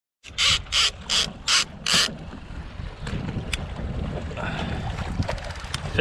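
Clicker on a conventional fishing reel ratcheting in five short bursts as line is pulled off the spool by hand, followed by a steady low rumble with a few faint clicks.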